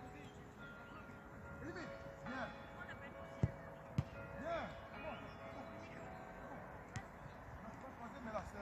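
A football struck hard: two sharp thumps about half a second apart a little past the middle, with another lighter thud about a second before the end. Distant voices carry on faintly behind.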